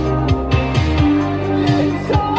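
Playback of a pop song's final chorus from a multitrack mix with the main chorus vocals muted: the backing track and the octave-higher final-chorus ad-lib layer over a steady beat of low drum hits.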